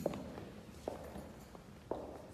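Footsteps on a hard floor: three sharp, fairly faint taps about a second apart.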